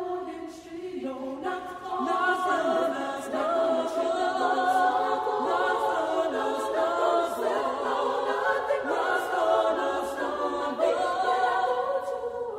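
A choir singing, several voice parts holding sustained chords that swell in over the first couple of seconds.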